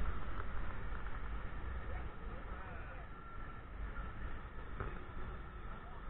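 Steady low rumble and hiss of wind and distant falling water at Niagara's American Falls, with faint voices in the background.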